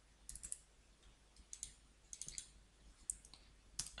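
Faint clicks of computer keyboard keys being typed, coming in a few short clusters spread across the few seconds.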